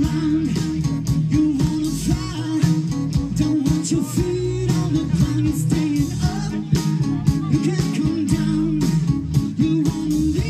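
Live rock band playing: a male lead singer sings over electric guitar with a steady beat, amplified through the PA.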